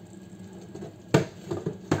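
Stainless-steel jug of a Cecotec Mambo food processor being handled and knocked down onto its base: a sharp metal knock a little past halfway, a few smaller knocks, and a second knock near the end.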